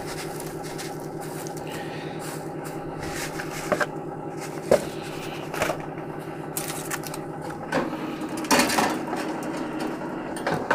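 Toaster oven's convection fan running with a steady hum, under scattered clicks and rustles of shredded HDPE plastic being handled in a foil pan. Near the end the oven door is opened with a clatter.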